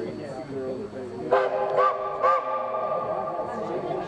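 Steam locomotive whistle blown about a second in, rising in two short swells and then held steady, several tones sounding together.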